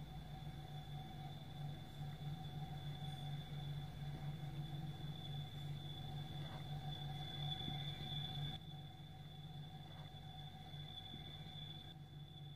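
A steady low electronic hum with a thin, high whine over it, getting a little quieter about eight and a half seconds in.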